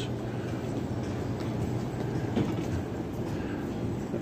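Shopping cart wheels rolling across a tiled store floor: a steady low rumble.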